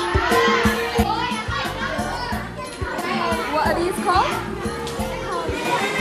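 Children chattering and calling out in a classroom over background music with a steady beat.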